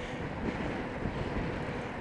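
Wind rushing over the microphone of a handheld camera on a bicycle ridden into a headwind, a steady noise with no distinct events.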